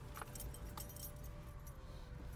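Low, steady rumble of a car driving slowly, heard from inside the cabin, with a few light metallic jingles and clicks in the first second.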